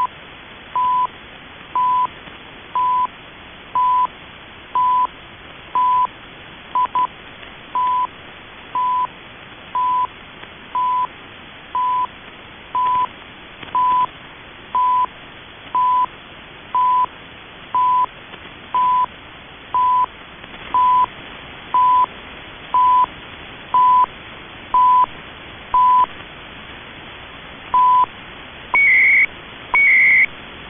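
CHU Canada shortwave time signal received on 14.670 MHz: a short 1 kHz tick once a second over steady receiver hiss. One tick is left out near the end, and then higher-pitched warbling data bursts start, one each second, carrying the station's digital time code.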